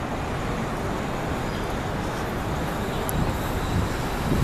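Steady downtown street noise: a continuous low traffic rumble with no distinct events.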